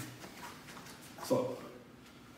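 A man's brief voice about a second and a half in, a short sound amid otherwise low room noise.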